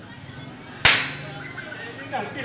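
A single sharp crack about a second in, ringing on briefly as it fades, standing out well above the quiet stage background.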